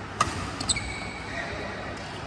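Badminton racket hitting a shuttlecock with a sharp crack just after the start. About half a second later come a few more clicks, then a high, thin squeak that holds for under a second.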